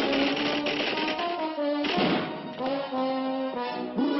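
Orchestral cartoon score with held brass notes, and a short burst of noise about two seconds in.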